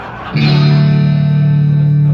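Electric guitar chord struck about a third of a second in and left ringing steadily through the PA, the opening chord of the song.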